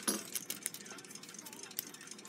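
Faint, scattered light metallic clinks and scrapes of a steel clock mainspring being worked by hand into its barrel, as the first coil is eased past the hook.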